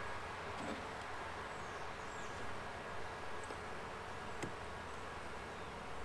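Saskatraz honeybees buzzing around an opened hive, a steady hum, with a couple of faint clicks.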